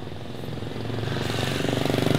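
Motor scooter engine approaching and passing close by, growing steadily louder toward the end.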